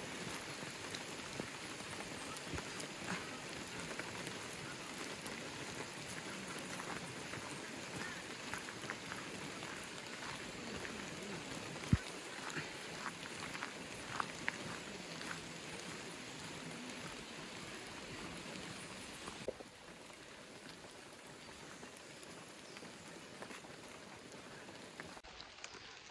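Rain falling on rainforest leaves and a dirt path: a steady hiss of rain with scattered sharper drops. It grows quieter about three-quarters of the way through.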